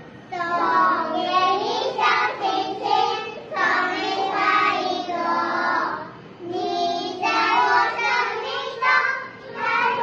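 A group of young children singing a song together in unison, breaking off briefly about six seconds in and again near the ninth second.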